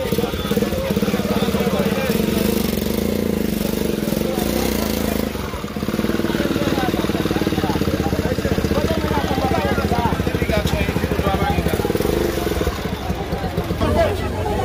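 Small motorcycle engine running steadily close by, with an even low pulsing, under the voices of a crowd.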